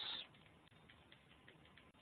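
Faint, irregular keystroke clicks of a computer keyboard being typed on.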